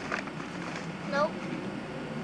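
Steady background hiss with a few faint crinkles from a brown paper bag being handled near the start. A child says a short 'nope' about a second in.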